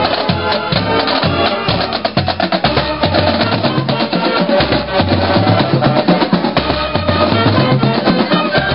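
Marching band playing, its drums loud and close, with the bass drum keeping a steady beat.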